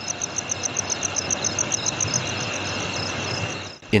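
Insects chirping at night: a rapid, even, high-pitched pulsing of about nine pulses a second over a steady high whine and background hiss. It cuts off abruptly just before the end.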